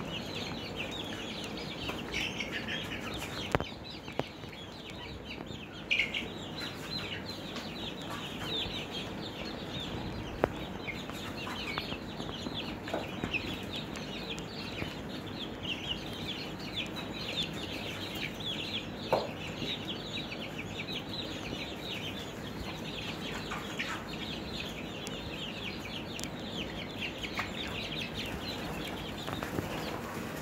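A flock of five-week-old chicks (Barred Plymouth Rocks, Golden Buffs and Easter Eggers) cheeping without pause, many short high peeps overlapping, over a steady low hum. A few sharp clicks stand out above the cheeping.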